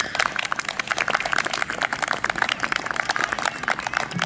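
Audience applauding at the end of a piece, with many quick, irregular claps.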